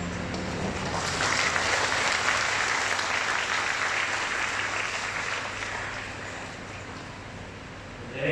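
A congregation applauding in a large hall, swelling about a second in and slowly dying away before the end.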